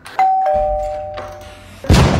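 A two-tone ding-dong doorbell: a higher chime, then a lower one, ringing on together and fading. Near the end comes a sudden loud boom with a long fading tail.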